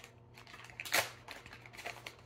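A toy marshmallow bag being pulled open by hand: a few short rustling rasps, the loudest about a second in.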